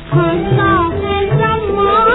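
A woman singing a 1940s Hindi film song from a 78 rpm record, with a repeating low beat underneath. A new sung phrase begins just after a brief dip at the start.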